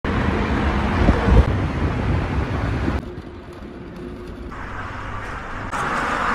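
Wind buffeting the microphone and road noise from riding along a road, with gusts about a second in. The sound cuts off suddenly about halfway through to a much quieter background, then changes again near the end.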